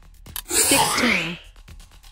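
Quiz countdown timer ticking, then a loud time's-up sound effect about a second long with a falling pitch, marking the end of the countdown.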